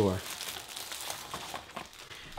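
Clear plastic wrapper crinkling as a picture mat is slid out of it and handled.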